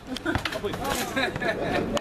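Several people talking and chattering informally, with a single sharp thud about half a second in.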